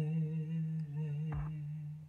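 A man's voice humming one long, low note with a slight waver, unaccompanied: the closing note of a sung ballad.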